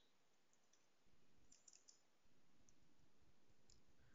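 Near silence with a few faint, scattered keystrokes from typing on a computer keyboard.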